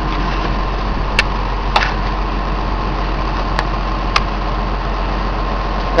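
Heavy diesel engine of an excavator idling steadily close by, with a few short sharp clicks over it.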